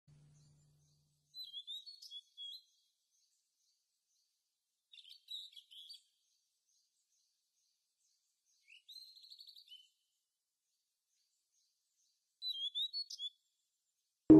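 A small songbird singing four short, rapid chirping phrases a few seconds apart, with near silence between them.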